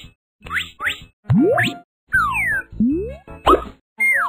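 Cartoon sound effects: quick rising pops in the first second, then a string of sliding whistle-like glides, some rising and some falling.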